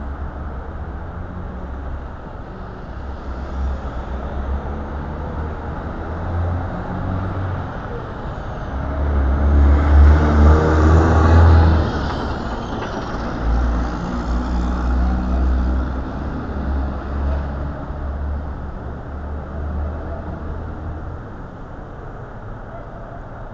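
City street traffic at an intersection, with a concrete mixer truck's diesel engine rumbling past about halfway through. Its engine is the loudest sound and swells for a few seconds before easing off as lighter cars go by.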